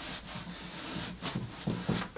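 Faint rustling and scuffing as a footbed is pushed down inside a snowboard boot's liner, with a couple of soft knocks in the second half.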